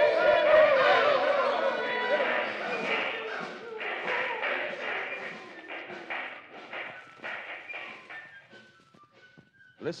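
Radio-drama sound effects: music and shouting men's voices over a run of rhythmic thumps, all fading out gradually over about nine seconds.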